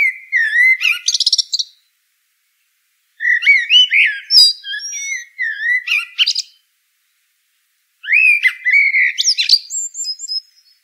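A songbird singing in phrases of quick, varied warbling notes that rise and fall, each phrase lasting two to three seconds, with short silent gaps between them.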